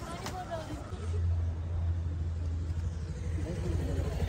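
A motor vehicle's engine running with a low steady hum that comes in about a second in, under faint voices.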